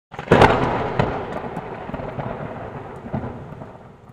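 A sudden loud crash, then a long rumble that slowly dies away, with further cracks about a second in and just after three seconds: a thunderclap sound effect.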